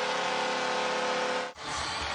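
The Buffalo Sabres' arena goal horn sounding as one steady chord over a cheering hockey crowd. It cuts off abruptly about one and a half seconds in, and the general noise of the arena crowd follows.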